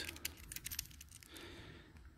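Faint handling noise: a few light clicks and taps in the first second, then low hiss.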